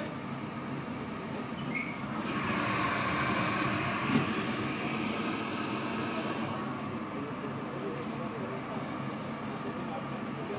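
Steady background din of a busy eatery, with indistinct voices, a brief high ringing sound about two seconds in and a sharp knock about four seconds in.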